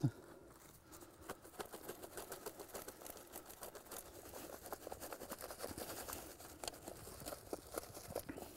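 Soil being shaken through a trapper's wire-mesh dirt sifter onto a buried foothold trap, screening out rocks and clods: a faint, continuous patter of small gritty ticks that starts about a second in.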